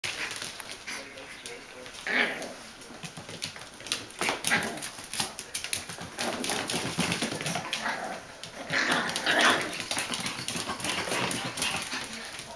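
Bichon Frisé puppies barking and vocalizing at play, in several short bouts, with frequent sharp clicks throughout.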